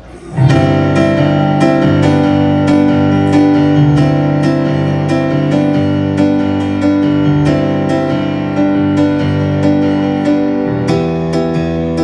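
Piano-voiced keyboard playing the opening chords of a song, starting suddenly about half a second in, with full, held chords that change every second or so and no singing.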